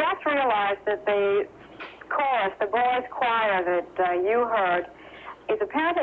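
Speech only: a person talking in phrases with short pauses.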